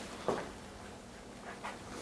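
KitchenAid KF8 super-automatic espresso machine running very quietly as it starts a drink: a faint, steady low hum, with two brief soft sounds over it.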